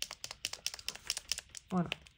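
Acrylic paint marker shaken hard, its mixing ball rattling inside in a fast run of clicks, about eight a second, that stops about one and a half seconds in. The hard shaking frees the ball where it sticks in the paint.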